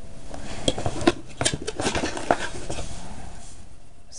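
Small plastic items and packaging from a hermit crab kit being rummaged through and handled: a quick run of light clicks, knocks and rustling that thins out near the end.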